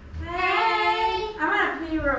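A high-pitched voice calling out in long, drawn-out sing-song notes, the last one falling in pitch near the end.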